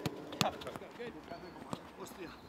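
A football being struck by players' feet in a quick passing drill on grass. There are a few sharp thuds, the loudest about half a second in and another near the end, with faint voices in the background.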